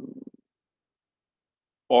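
A man's speaking voice trailing off, then about a second and a half of dead silence, with his voice starting again right at the end.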